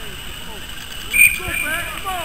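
A short, sharp blast on a referee's whistle about a second in, the loudest sound, over the scattered calls of football players on the pitch.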